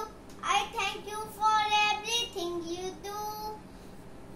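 A young boy singing solo: three sung phrases with drawn-out notes, the middle one dipping lower, separated by short gaps.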